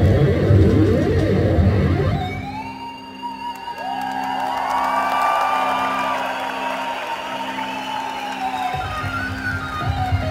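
Live rock band music. About two seconds in, the band drops out to a steady low held note, and a keytar's synth lead plays above it with gliding pitch bends. The full band comes back in near the end.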